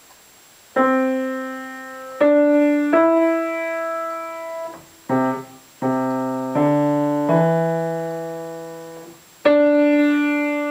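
Piano playing an easy lesson-book piece slowly, beginning about a second in. Single held melody notes each fade before the next, in short phrases with brief breaks, and lower bass notes join in the middle.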